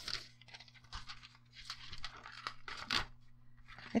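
Sheets of paper and a piece of thin metallic deco foil being handled: soft, intermittent rustling and crinkling with a few small scrapes and taps. A faint steady low hum runs underneath.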